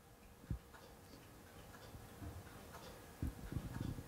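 A quiet room with faint ticking and a few soft, low thumps, one about half a second in and several close together near the end.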